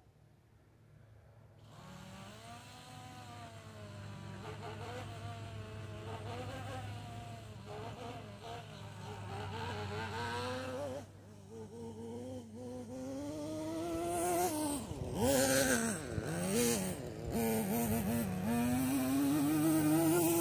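Nitro glow engine of a Traxxas Nitro Rustler RC truck buzzing as it drives, its pitch rising and falling with the throttle. It comes in faintly about two seconds in and grows louder, with quick revs in the last few seconds and a long rising whine near the end.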